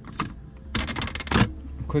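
Plastic cupholder and centre-console trim of a BMW E46 being pulled up by hand. Its retaining clips click loose, with a short run of plastic clicking and rattling about a second in.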